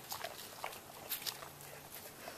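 Faint scattered crackles of dogs' paws on dry leaf litter, with a faint low hum for under a second near the end.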